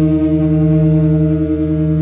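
Rock band's amplified electric guitars holding one sustained chord that rings steadily with the drums stopped: the final chord of a song ringing out.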